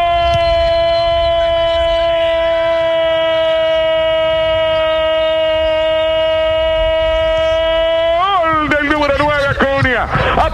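A male radio football commentator's long goal cry, one loud note held steady for about eight seconds before it breaks into rapid shouted speech near the end.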